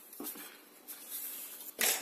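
Faint rustling and scraping of folded card stock being creased with a bone folder on a cutting mat, with two light taps.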